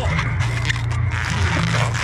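Latex modelling balloon rubbing and squeaking as it is twisted by hand close to the microphone, over a steady low rumble of wind on the microphone.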